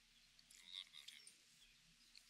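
Near silence with faint, high bird chirps from a park ambience, starting about half a second in.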